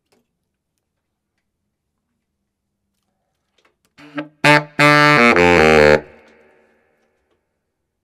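Baritone saxophone played through a vintage Berg Larsen 110/1 mouthpiece: after about four seconds of silence, a couple of short notes and then a quick run of notes about a second long that drops into the horn's low register, fading out in the room.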